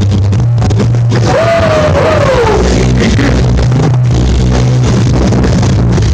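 Loud battle music with a heavy, steady bass, played for a b-boy breaking battle. A sliding melodic line rises and then falls a little over a second in.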